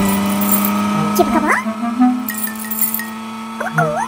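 Cartoon soundtrack music with sustained held notes, and two short swooping sounds that dip and then rise in pitch, one about a second in and another near the end.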